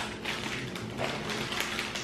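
Food packaging being handled: a plastic-wrapped tray of donut holes and a cardboard box, giving a run of small crackles and taps with a sharper click at the start.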